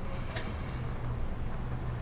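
Steady low background hum, with two faint ticks in the first second.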